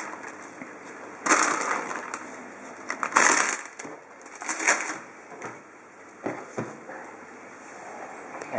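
Clear plastic bag of rocket leaves crinkling in a few short bursts as the leaves are shaken out onto a sandwich, then a few light knocks.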